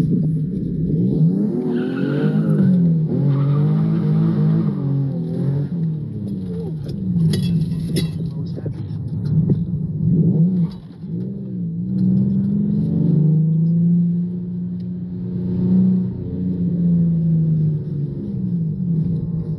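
A car engine revving up and down over and over, its pitch rising and falling every second or two, with a brief drop about ten seconds in and a steadier stretch near the end.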